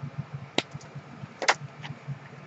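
Handling of a hardcover book and its paper dust jacket: two sharp clicks about a second apart, the second the louder, with a fainter tick just after, over a low steady hum.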